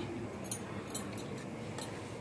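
Metal wire whisk stirring spices into thick yogurt in a ceramic bowl, with a few faint clinks of the wire against the bowl, the clearest about half a second in.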